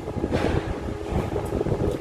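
Low steady rumble with a faint hum, the sound of a lift car travelling.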